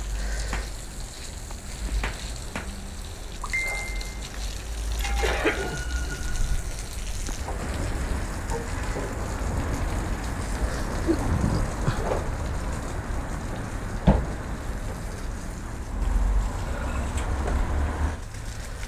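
Water spraying from a garden hose onto a wet concrete driveway: a continuous spattering hiss that gets stronger about halfway through. A single sharp knock stands out about fourteen seconds in.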